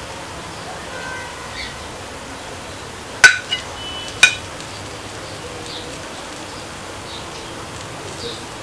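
A metal spoon clinking against a ceramic plate: a sharp ringing clink a little after three seconds in, a smaller tap just after it, and another clink about a second later, over steady background noise.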